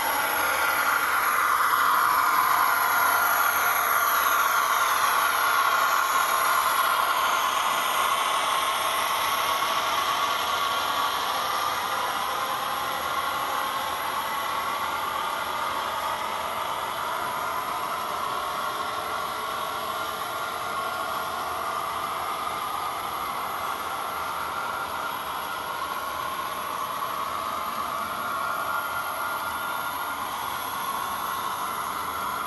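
HO-scale model coal train running on its track: the locomotives and a long string of hopper cars roll past with a steady rolling and rattling hiss. It is loudest in the first few seconds as the locomotives pass, then eases off gradually as the cars follow.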